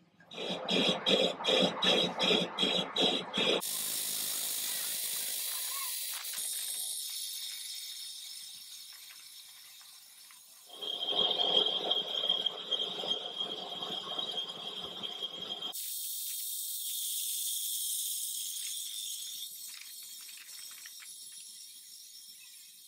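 Metal lathe cutting a steel chuck back plate. It starts with a few seconds of regular pulsing, about three a second. From about eleven seconds in, a steady high squeal from the tool rides over the cut for several seconds, and a fading hiss follows.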